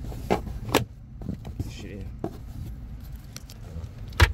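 Plastic glove box being pushed back into place in the dashboard: a few sharp clicks and knocks, three in the first two and a half seconds, over a low steady rumble.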